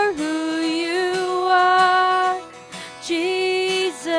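Worship song: a woman's voice holds long, sung notes with vibrato over a soft instrumental accompaniment. The voice breaks off briefly about two and a half seconds in, then comes back on a new note.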